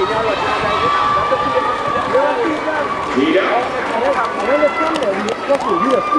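Several spectators' voices shouting and calling out at once, overlapping, with no clear words, as sprinters race down the home straight.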